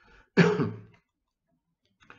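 A man clears his throat with a single short cough about half a second in.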